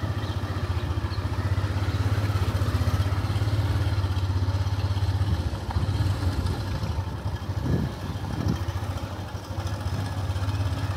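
A motor engine running steadily nearby, a low pulsing hum that eases off a little near the end.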